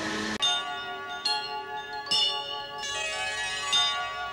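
Bell-like chimes in a short musical interlude: about four struck notes, each ringing on as it fades.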